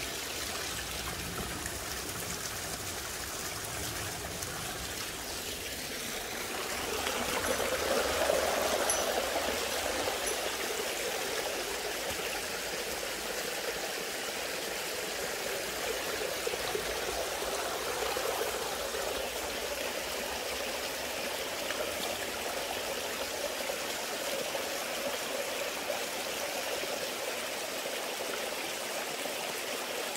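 Small mountain stream trickling and splashing in thin falls down mossy rock ledges, a steady rush of water that swells a little about seven seconds in.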